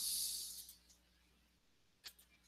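A brief high hiss that fades out within the first second, then faint room tone.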